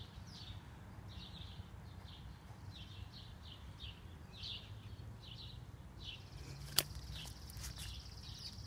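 A small bird repeating short, falling high chirps about twice a second over a low outdoor rumble, with a steady high trill joining about six seconds in. A single sharp click sounds near the end.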